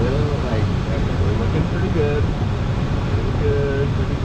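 Steady rush of air past a Schleicher ASK 21 glider's canopy, heard from inside the cockpit on final approach to landing: a dense low rumble with no engine note. Brief bits of voice come through it a few times.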